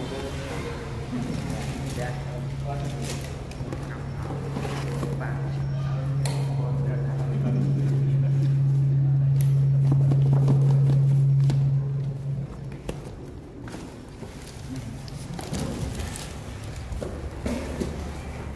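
People's voices talking in the background, with a steady low hum that grows louder over about ten seconds and then cuts off suddenly about twelve seconds in. Scattered short clicks and knocks of handling are heard throughout.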